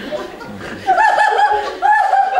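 A woman laughing loudly in quick, high-pitched "ha-ha-ha" pulses, breaking out about a second in after quieter laughter.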